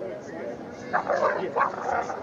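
Distant chatter of voices, with three short, loud yelps about a second in.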